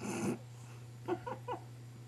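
Pug puppy giving a short snuffle, then three brief high whimpers about a second in.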